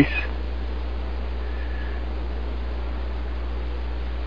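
Steady low hum with a faint even hiss over it, with one faint, brief high tone about one and a half seconds in.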